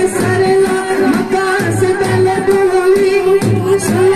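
A group of young male voices singing a qawwali together into microphones, amplified through a PA, over a long held note and a regular low beat about twice a second.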